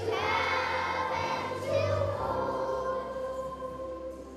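A group of elementary school children singing a patriotic song together, ending the phrase on a long held note in the last couple of seconds.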